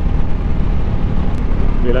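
Steady wind rush and low engine drone of a VOGE 300 Rally's single-cylinder engine cruising along the road, picked up by the rider's on-board microphone, with a faint click about a second and a half in.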